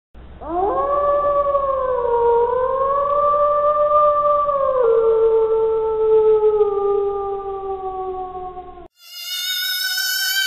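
One long howl that swoops up at the start, holds and wavers, drops a step about halfway and then slowly falls before cutting off. About nine seconds in, music with a wavering tone begins.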